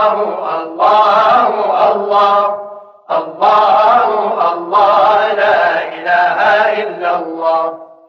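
Male chanting of an Islamic devotional nasheed (inshad), with no instruments to be seen, in sung phrases and a brief break about three seconds in.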